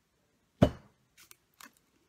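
A single sharp knock of an object against a tabletop about half a second in, followed by a few faint light clicks.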